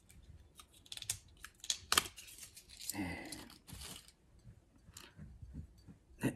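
Paper capsule being torn and peeled off the neck of a whisky bottle: a series of small crackles and rips, with a longer tearing stretch about three seconds in.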